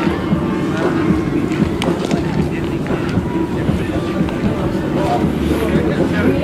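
A group of young men's voices talking and shouting over one another, with wind buffeting the microphone.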